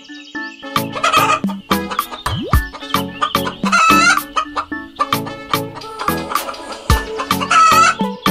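Hen clucking sound effect, two short bouts about four seconds in and near the end, over background music with a steady beat.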